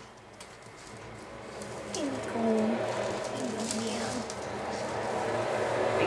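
A low wordless human voice, a murmur whose pitch rises and falls, starting about two seconds in and returning near the end, over faint scattered clicks.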